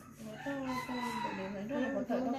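A rooster crowing once, a long call beginning about half a second in, under a woman's low voice.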